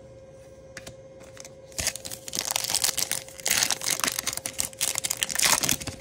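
A foil wrapper of a 2023 Topps Chrome trading-card pack being torn open and crinkled in the hands. The dense crackling starts about two seconds in and lasts about four seconds.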